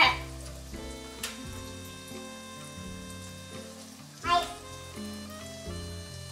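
Soft background music with a faint steady sizzle of oil frying under it, and a brief child's vocal sound about four seconds in.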